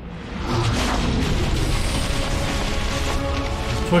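Film soundtrack: music over a sustained booming blast effect as two spell beams from wands collide, swelling up about half a second in and holding steady with a low rumble.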